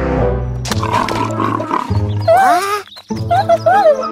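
Cartoon T-rex roar sound effect over bouncy children's background music. Later come several short, squeaky calls that rise and fall in pitch.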